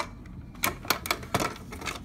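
A series of sharp plastic clicks and taps, about seven in two seconds and the first the loudest, as a plastic toy figure is handled against a plastic CD boombox.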